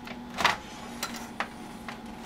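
A few sharp clicks, the first and loudest about half a second in, as the frequency setting on an ultrasonic test instrument's control panel is stepped, over a faint steady electrical hum.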